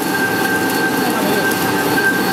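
An LFQ slitter-rewinder running at speed, a dense steady mechanical noise with a constant high-pitched whine over it.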